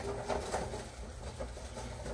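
Live aquarium sand sliding out of its plastic bag into a glass tank, with the bag rustling. It is faint, a soft trickle and crinkle after the louder pour.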